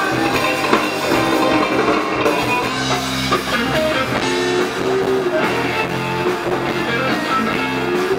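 Live band playing rock music through a PA: guitars and drum kit, with no vocal line.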